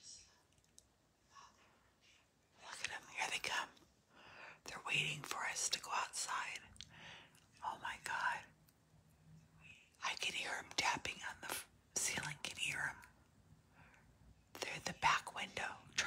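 Hushed, whispered speech in several bursts with short quiet gaps between them.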